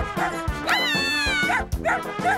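Cartoon poodle's high yelps, one long call in the middle that falls in pitch at its end, over upbeat background music with a steady drum beat.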